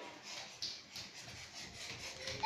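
Faint footsteps of small children running on a tiled floor, over low room noise.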